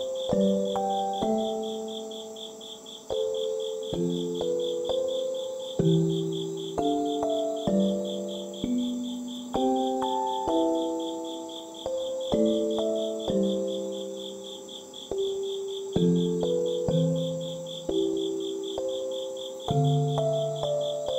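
A slow, gentle keyboard melody of single struck notes that fade away, over the steady pulsing chirps of crickets.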